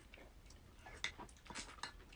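Faint clicks and small crackles of shell-on shrimp being peeled by hand and eaten, with a cluster of sharp ticks in the second half.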